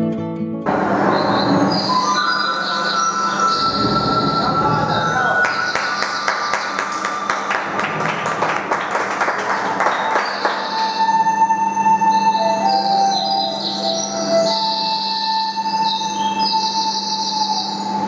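Recorded intro track for a stage dance, built from sound effects rather than a tune. There is a noisy wash with a few held steady tones, bursts of high chirping, and a fast run of clicks through the middle. It replaces guitar music that cuts off about half a second in.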